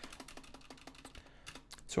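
Computer keyboard typing: a quick, steady run of light keystrokes as code is entered.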